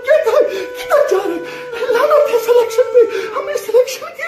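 A man sobbing and wailing in a strained, high-pitched voice, his words broken up by crying.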